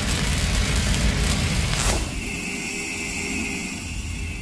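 Cinematic logo sound effect: the rumbling tail of a deep impact hit, then about two seconds in a short whoosh gives way to a quieter sustained high ringing drone that fades.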